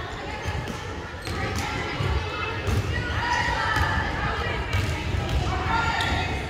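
Volleyballs being hit and bouncing on a hardwood gym floor, several sharp thuds at irregular intervals, over the background voices of players in a large gym.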